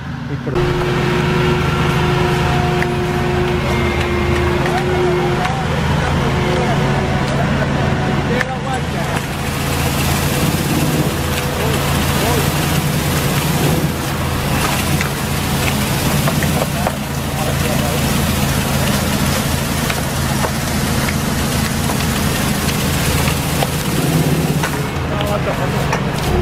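Tractor-mounted olive trunk shaker running: a loud, steady engine drone with a steady higher tone over it for the first five seconds, turning harsher and hissier from about nine seconds in as the tree is shaken.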